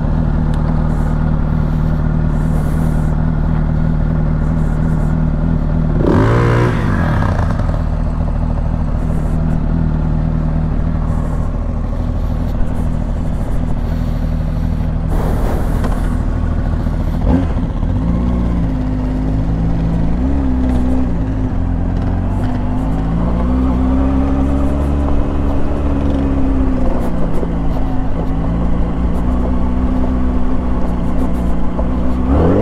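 A 2005 Honda CBR600RR's inline-four, fitted with a Yoshimura exhaust and no catalytic converter, idling steadily, its pitch briefly rising and falling about six seconds in. A click about 17 seconds in, then the engine's revs rise and fall as the bike pulls away at low speed on gravel.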